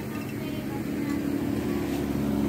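A steady low mechanical hum made of a few held tones, growing slightly louder toward the end.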